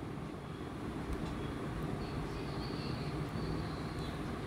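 Steady low-pitched background rumble, with a faint thin high tone for about a second around the middle.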